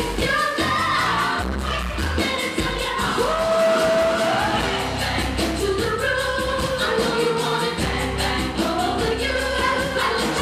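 Live pop performance: a female lead singer with a band over a steady drum beat, holding one long sung note a few seconds in.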